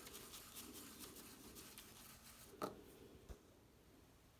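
Faint, rhythmic scratching of a block crayon rubbed back and forth across paper, with a short click about two and a half seconds in.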